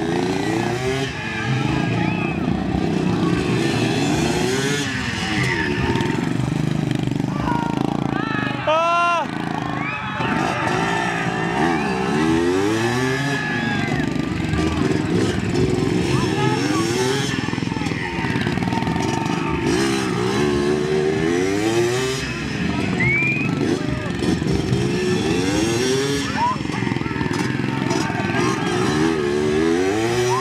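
Motorcycle engine revving up and down over and over as the bike is ridden around a course, with one sharp high rev about nine seconds in. Crowd voices run underneath.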